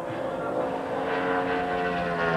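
NASCAR Winston Cup stock car's V8 engine running at high revs on a single-car qualifying lap, a steady drone whose pitch eases slightly near the end.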